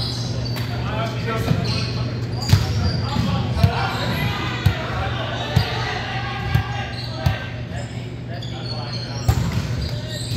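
A ball thudding about once a second in a large, echoing gymnasium, over a steady low hum and players' voices.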